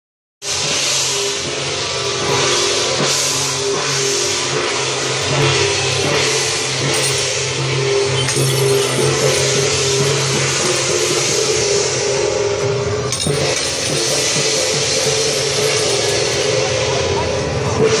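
Temple procession percussion: drums and repeated cymbal crashes playing, with a steady low drone underneath and crowd chatter.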